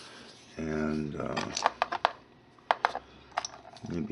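A short hummed voice sound, then small hard stones clicking against each other: about seven sharp, separate clicks as they are handled and set in place.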